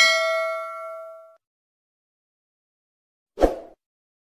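Notification-bell sound effect: a single bright ding, struck at the very start, that rings and fades over about a second and a half. About three and a half seconds in there is a short, soft burst of sound.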